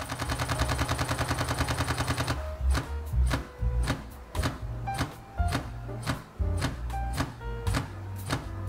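Olympus E-M5 Mark III's shutter firing in a continuous high-speed burst, about ten shots a second. A little over two seconds in the buffer fills and the shots slow to an uneven, slower pace while the camera writes to the card. Background music plays under it.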